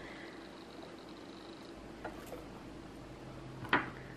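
Quiet kitchen room tone: a faint steady background hiss with a couple of soft ticks about two seconds in.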